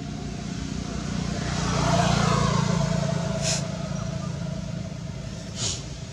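A motor vehicle passing on a road, rising to its loudest about two seconds in and then fading. Two short high sounds come later.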